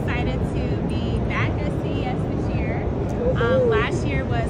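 A woman speaking over the loud, steady din of a crowded convention hall, a dense low rumble with background chatter underneath her voice.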